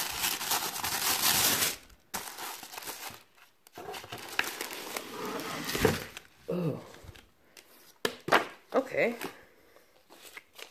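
Tissue paper crinkling as it is unfolded inside a cardboard gift box. The rustling comes in bursts and is loudest over the first two seconds.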